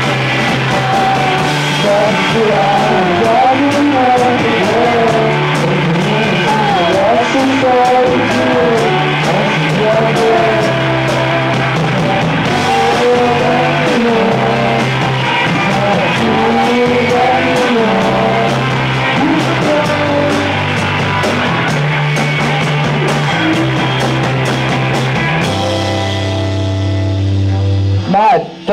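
Live rock band playing electric guitars, bass and drums, with a male voice singing the melody. About three-quarters of the way through, the drums and cymbals drop out and a low chord is held to close the song.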